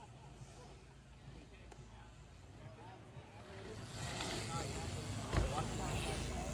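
Faint chatter of several voices, then a rushing noise that builds over the last couple of seconds, with one sharp thump about five seconds in.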